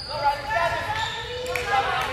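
Girls' voices calling out across a gymnasium, echoing in the large hall.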